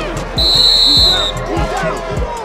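A referee's whistle blows once, a high-pitched tone lasting just under a second and louder than everything else, over backing music with deep kicks about twice a second and a voice.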